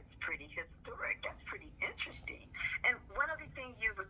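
A man's voice talking over a telephone line played through a speaker, with the thin, narrow sound of a phone call.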